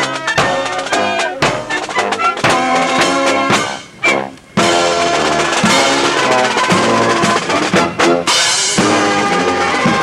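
Military marching band playing a march: sousaphones, trumpets and saxophones over drums. About four seconds in, the sound dips and cuts out for half a second, then the music comes back.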